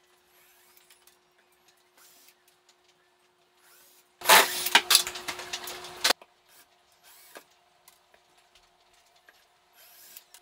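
Cordless drill driver running in one loud burst of about two seconds, backing screws out of cabinet door hinges, and cutting off abruptly. Faint clicks and knocks from the work come before and after it.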